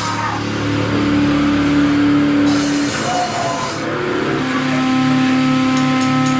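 Distorted electric guitar and bass notes held and left ringing through the amplifiers, with the drums mostly stopped; the held note shifts lower about three seconds in. A cymbal washes briefly a little after two seconds in, and thin steady feedback tones rise out of the amps from about four and a half seconds in.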